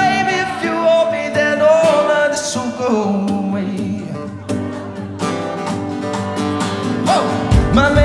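Live band music: acoustic guitar and keyboard under a singing voice, with bass and drums coming in strongly near the end.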